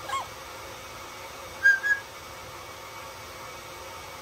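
Amazon parrot vocalizing: a short falling call right at the start, then two short whistled notes, the loudest sound, a little under two seconds in.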